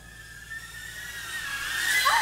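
DJI Avata FPV drone's propellers and motors whining at high speed, a high tone that wavers slightly in pitch and grows steadily louder.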